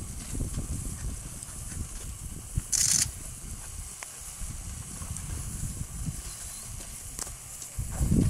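A herd of African savanna elephants walking past close by, heard as an uneven low rumbling noise, with one short, sharp hiss about three seconds in.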